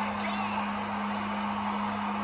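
A steady low hum over an even background hiss, with no distinct sound standing out.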